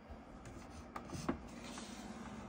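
Door of a small mini fridge being pulled open by hand: faint handling noise with two short clicks about a second in, the second the louder, followed by a faint steady hum.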